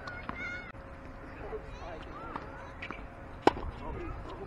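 Tennis ball struck by a racket during a rally: one sharp, loud hit about three and a half seconds in, with fainter knocks before it.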